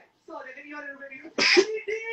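Quiet talking voices, cut by a short, sharp vocal burst about one and a half seconds in.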